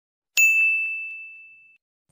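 A single ding sound effect from a subscribe-button notification-bell animation: one sudden bell-like tone about a third of a second in, ringing down and fading out over about a second and a half.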